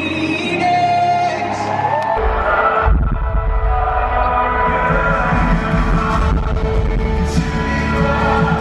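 Live worship-band music with singing in a large hall. Around two to three seconds in, the sound cuts to a different song with heavy bass and a long held note underneath.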